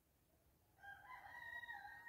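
Near silence, with a faint, drawn-out animal call starting about a second in and held for over a second.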